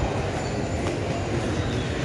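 Steady rumbling background noise of a busy shopping mall, with no single sound standing out.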